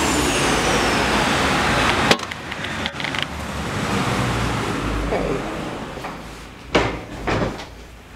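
Street traffic noise heard from a balcony above the road, swelling again midway as a vehicle goes by. A sharp knock comes about two seconds in and two short knocks near the end, after which the street noise fades.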